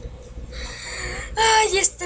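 A boy's voice without words: a breathy sound, then a short, loud, high-pitched cry about a second and a half in.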